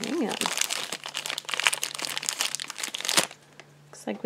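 Plastic blind-bag wrapper crinkling and crackling as it is pulled open by hand and a mini vinyl figure is taken out. The crinkling stops abruptly about three seconds in.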